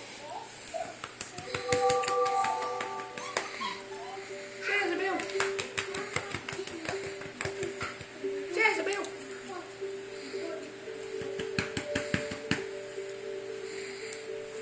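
Music with a long steady note, over scattered sharp clicks and taps, and two short voice-like sounds about five and nine seconds in.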